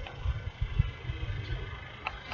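Low, uneven rumble of wind buffeting the microphone, coming in short irregular gusts.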